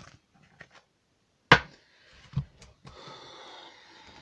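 Tarot cards being handled: a sharp tap about a second and a half in, a softer one shortly after, then about a second of soft rustling as the deck is shuffled.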